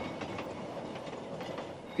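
A freight train of wooden boxcars rolling along the track: a steady running noise of wheels on rails.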